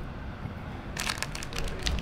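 Pearl Crystal Flash strands crinkling as they are handled and folded back on the fly: a run of irregular sharp crackles starting about halfway through.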